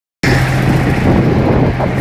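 Tractor engine running steadily under way, a loud, even drone heard from on board the moving tractor. It cuts in abruptly just after the start.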